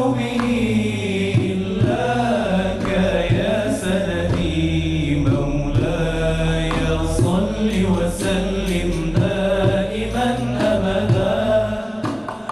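A male solo singer performs Arabic Sufi devotional chant (inshad) in long, gliding, ornamented phrases, backed by a low sustained hum from a male chorus.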